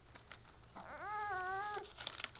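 A baby's single drawn-out vocal call, high-pitched and held for about a second, starting a little under a second in.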